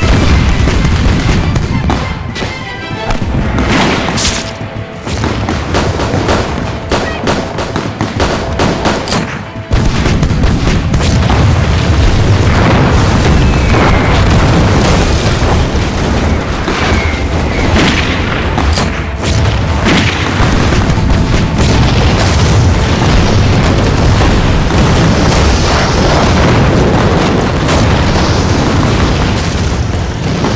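Action-film battle soundtrack: loud booms and explosions over music. About ten seconds in, it swells into a dense, continuous din.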